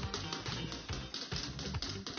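Upbeat game-show background music with a steady beat and a run of quick, light clicks.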